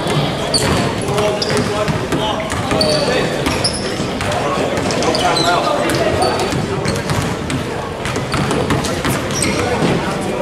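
Many voices talking at once in a large gym, with a basketball bouncing and sneakers squeaking on the hardwood floor.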